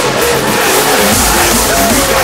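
Hardstyle track playing: a synth lead melody with sliding pitch bends over a thinned-out low end, the heavy bass and kick coming back in about halfway through.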